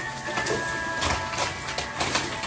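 Black plastic garbage bag rustling and crinkling in irregular bursts as it is gathered up and tied, over faint background music.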